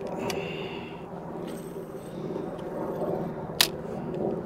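Steady outdoor wind and water noise on a boat on open water. There is a faint click with a brief hiss just after the start, and a single sharp click near the end.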